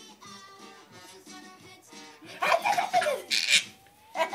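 A baby's loud squealing laugh bursts out about two seconds in while he is being tickled, over background music.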